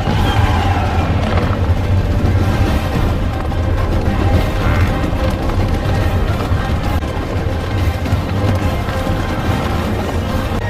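Film score music over the continuous low rumble of a wildebeest herd stampeding through a gorge.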